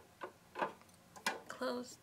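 A few sharp plastic clicks and knocks from a toy washing machine's lid and door being handled, followed near the end by a short hummed voice.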